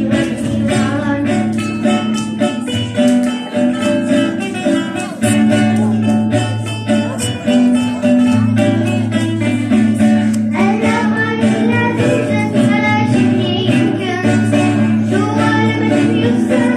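Live acoustic guitars strummed along under steady low accompaniment notes, with a child singing a song. The singing comes in more strongly about two-thirds of the way through.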